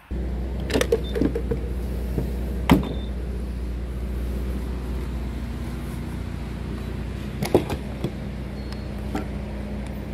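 Steady low hum of a gas station fuel pump, with a few sharp clicks and knocks from the pump nozzle and filler being handled; the loudest click comes a little under 3 seconds in.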